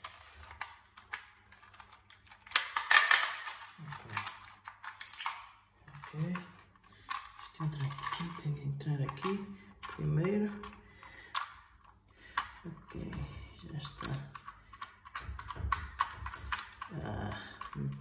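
Hard plastic clicks and knocks of a bicycle phone holder being handled and pressed onto its handlebar mount, with a louder noisy burst about three seconds in.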